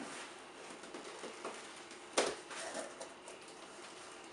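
Blade slitting packing tape along the top of a cardboard box, with faint scratching and a few small ticks, and one sharp crack a little over two seconds in as the box is opened.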